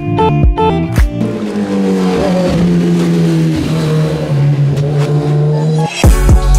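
A motorcycle engine running over background music. Its pitch sags and then settles lower about four seconds in.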